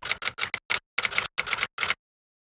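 Typing sound effect: a quick, slightly irregular run of about nine sharp keystroke-like clicks that stops just before the end.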